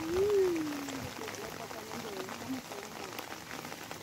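Steady rain pattering, with many fine drop ticks. The loudest sound is a person's single drawn-out vocal sound in the first second, rising and then falling in pitch, followed by faint snatches of voice.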